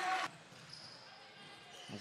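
Arena sound cut off abruptly about a quarter second in, leaving faint basketball-gym ambience with a ball bouncing on the hardwood court.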